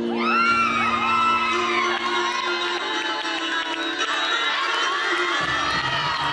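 Teammates cheering, shouting and whooping in encouragement over the gymnast's floor-exercise music. The cheers burst in right at the start and carry on throughout, and the music's bass comes back in near the end.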